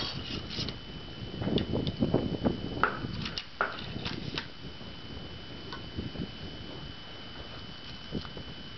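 Ramrod being worked down the barrel of a Thompson Center Hawken .54 muzzle-loader, seating the patched ball on the powder charge: a few seconds of irregular soft knocks and scrapes. After that the handling goes quiet, with a faint steady high whine behind it.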